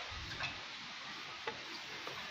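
Plastic bucket and rope being lowered into a well: a dull thump near the start, then a couple of sharp clicks about a second apart over a steady background hiss.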